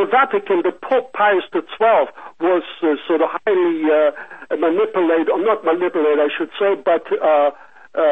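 One person talking without pause, in a thin, narrow voice as over a telephone line.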